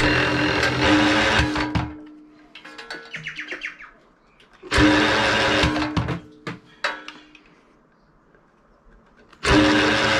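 Ryobi cordless drill spinning an Enerpat wire-stripping machine in three short bursts of about two seconds each, its motor whining steadily as the rollers and blade pull insulated copper cable through to slit the jacket. A brief rattle of clicks comes between the first two bursts.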